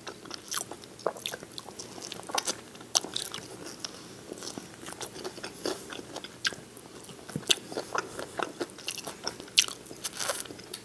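Close-miked eating of fried chicken wings: wet chewing, crunching and irregular sharp mouth clicks. The meat is pulled from the bone with the fingers, the bone is sucked, and the fingers are licked.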